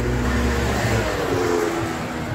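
A car passing on the street: steady engine hum and tyre noise, easing slightly near the end.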